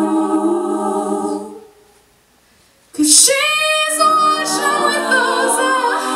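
All-female a cappella group singing in close harmony with no instruments. The voices fade out about a second and a half in, leaving a pause of about a second, then the full group comes back in loudly around halfway through.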